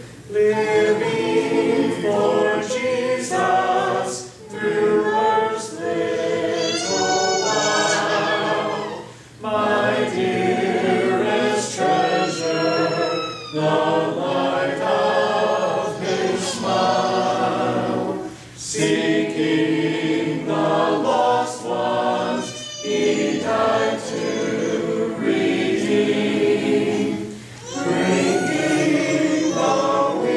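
Congregation singing a hymn a cappella, without instruments, with a song leader's voice among them. The singing comes in phrases of a few seconds, with short breaks for breath between them.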